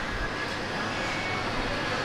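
Steady background hum of a large indoor shopping mall: an even rushing noise with no distinct events.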